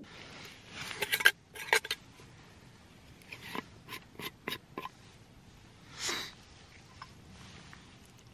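Small brass methylated-spirit burner being handled: its lid is turned off and set aside, giving a few light metallic clicks and taps about a second in and a quicker run of them between three and five seconds in. A short soft hiss follows about six seconds in.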